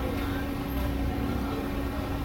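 Steady low engine-like hum and rumble of machinery in a busy fish-market hall, with a constant drone.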